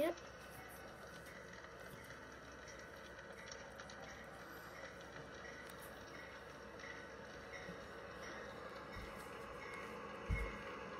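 Faint steady noise from a live railcam's audio feed played through a speaker, slowly growing louder as a train draws near, with a low thump near the end.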